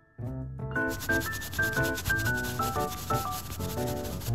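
A makeup brush rubbed rapidly over a paper eyeshadow palette, a fine scratchy rubbing starting under a second in. It runs under background music with a melody that steps downward.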